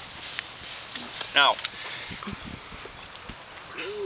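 Outdoor background noise with a single spoken word and a few faint, short knocks.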